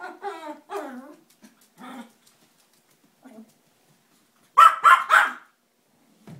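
Toy poodle puppy making small whiny, growling sounds, then three quick sharp barks about a second before the end, barking at something under the furniture.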